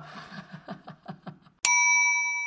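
A single bright bell ding strikes about one and a half seconds in and rings on, fading slowly. Before it there are only faint, brief voice sounds.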